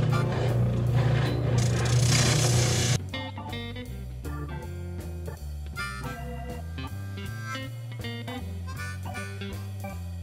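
Ridgid oscillating spindle sander running and sanding a wooden neck blank, a steady hum with gritty hiss, cutting off suddenly about three seconds in. After that only background music with a steady bass line.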